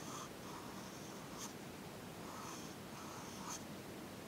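Pencil scratching on paper in about five short sketching strokes, with two brief clicks, one about a third of the way in and one near the end.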